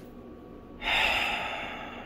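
A person's breath close to the microphone: one sharp, noisy exhale or sniff about a second in, fading over about a second.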